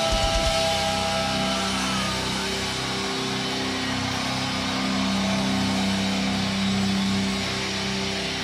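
Metalcore band's closing chord ringing out on distorted electric guitars and bass, a steady held drone through the amps after the last drum hits stop about half a second in.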